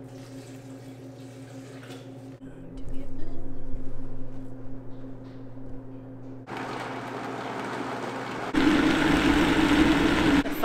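Water poured into a Vitamix blender jar over soaked almonds and cashews, then the blender starts about two-thirds of the way in and steps up to a louder high speed near the end, grinding the nuts into nut milk.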